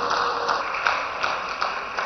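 Audience applauding in a large hall, many hands clapping, slowly dying away.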